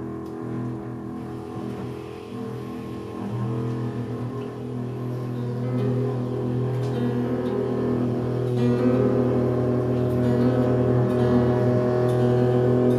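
Free-improvised trio music: a double bass bowed in long held tones, with tenor saxophone and archtop guitar, growing louder in the second half.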